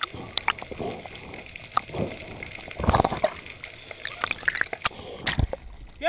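Underwater water noise picked up through a camera housing: irregular gurgling and trickling, scattered sharp clicks, and a few louder splashy bursts, the loudest about halfway through.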